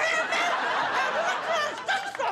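Studio audience laughing, many voices together.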